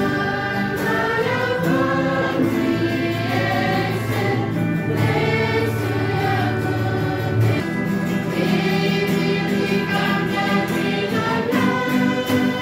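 A choir singing a church hymn in held, slow-moving phrases over sustained low accompanying notes.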